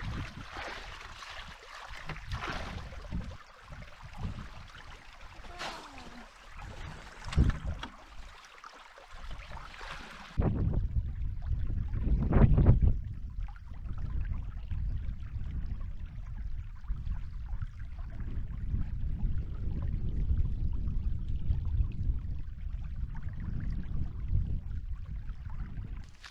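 A shallow creek trickling, with a few splashes and knocks as a tracer solution is poured in. After a cut about ten seconds in, a steady low rumble takes over, swelling briefly soon after.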